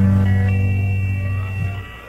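Country band playing a short instrumental gap between sung lines: guitar and bass holding notes that fade near the end.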